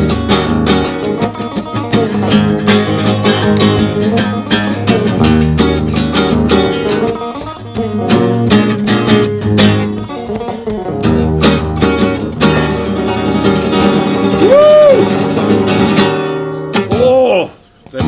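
An electric guitar and a steel-string acoustic guitar played together in a lively jam, the acoustic strummed, with a bent note rising and falling shortly before the playing stops, about a second and a half before the end. A brief voice follows.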